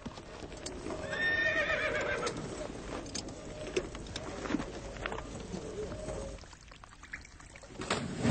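A horse whinnying with a wavering pitch about a second in, followed by scattered hoof clops and knocks over a low rumble of camp ambience.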